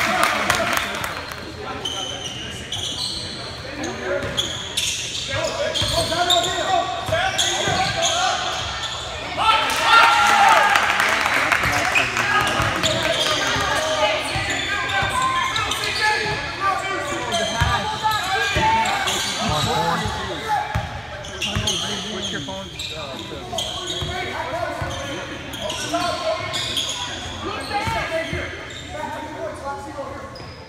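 A basketball bouncing on a hardwood gym court during live play, with many short knocks echoing in the large hall, over the voices of players and spectators; the voices swell briefly about ten seconds in.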